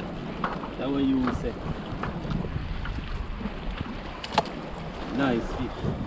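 Wind on the microphone over sea water washing against a rocky shore, a steady rushing, with one sharp knock a little past four seconds in.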